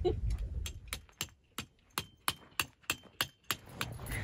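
A quick run of sharp clicks and clinks, about three or four a second, from hard objects being handled.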